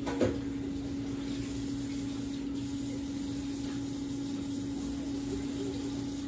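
Room tone: a steady low hum over faint hiss, with a brief faint sound just after the start.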